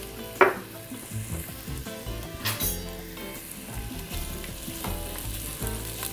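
Diced onions sizzling as they sauté in an enameled cast-iron Dutch oven, stirred with a spoon. A couple of short clacks of the spoon against the pot, the loudest about two and a half seconds in.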